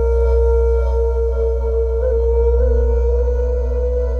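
Live music: a wind instrument holds one long steady note, shifting slightly in pitch about two seconds in, over a low steady drone.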